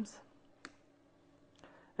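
A quiet pause in a man's lecture speech, broken by one short, sharp click about two-thirds of a second in.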